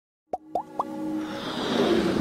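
Logo intro sound effects: three quick pops in the first second, each a short upward blip pitched higher than the last, then a rising whoosh that swells steadily louder.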